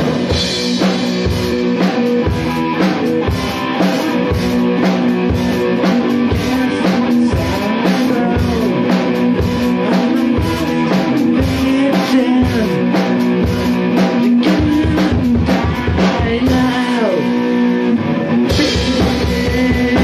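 Amateur rock band playing live: drum kit and electric guitar in an instrumental passage with a steady beat. Near the end the drums drop out for about two seconds, leaving the guitar ringing, then come back in.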